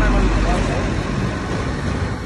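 A heavy container truck driving past on the road, its low rumble fading away over the first second or so.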